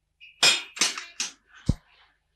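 A barred metal gate clattering: about four sharp clanks in quick succession, the last with a deeper thud.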